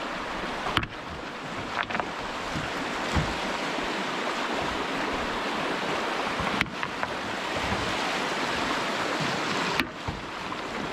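Steady rushing of flowing stream water, a constant hiss-like roar, briefly cutting out a few times.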